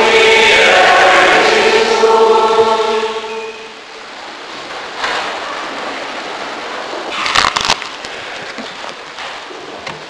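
A congregation singing a short chanted response in long held notes, fading out about three and a half seconds in. Quieter room noise follows, with a brief cluster of knocks or rustles about seven and a half seconds in.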